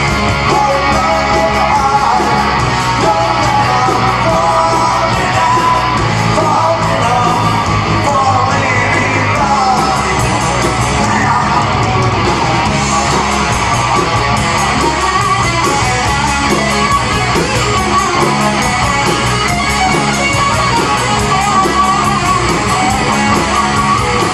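Live rock band playing a grungy power-pop song at full volume: distorted electric guitars, bass and drums, with shouted singing.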